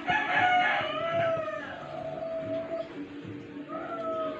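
A rooster crowing: one long crow of nearly three seconds that ends on a held, slightly falling note, with another crow starting near the end.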